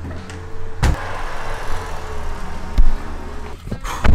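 A house door being opened and shut, with a sharp knock about a second in and a louder thump later on, over a steady low background hum.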